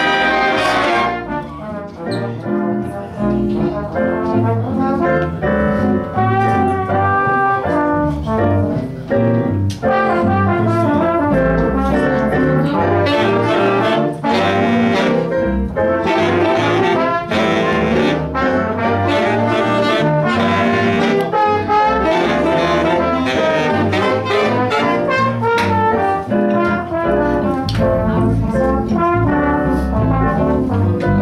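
Big band playing a jazz number: a saxophone section with trombones and trumpets over electric bass, without a break.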